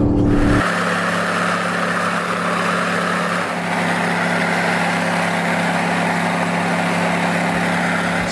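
A pickup's V8 pulling a trailer drones steadily inside the cab. About half a second in, the sound cuts abruptly to highway driving noise heard from a vehicle alongside: a steady engine hum under a rush of tyre and wind noise.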